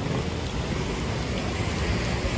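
Steady outdoor noise: wind rumbling on the microphone, with an even hiss over it.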